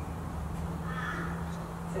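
A short bird call about a second in, over a steady low hum.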